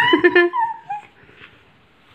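A toddler's high, wavering squeal of delight that trails off about a second in.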